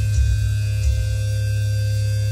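Loud, steady low electric hum from the stage amplifiers of a live metal band, with a couple of soft low thumps in the first second.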